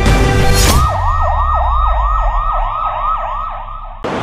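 An electronic siren in a fast yelping wail, its pitch sweeping up and down about three times a second, over a low rumble. It starts about a second in, as a burst of music cuts off.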